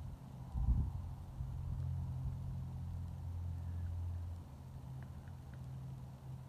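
Low, steady rumble of distant motor traffic that eases slightly past the middle, with a short low thump about a second in.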